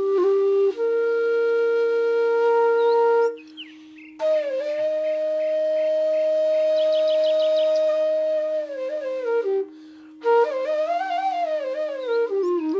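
Background music: a flute melody of long held notes with slides and a quick trill, over a steady drone note. The melody breaks off twice for under a second, and a few short high chirps come and go.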